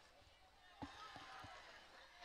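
Near silence: faint background room tone with a few faint soft knocks about a second in.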